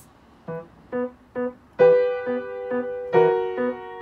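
Piano playing the opening bars of a beginner's practice piece: three short separate notes, then a held chord with short lower notes repeating beneath it, and the chord struck again about three seconds in.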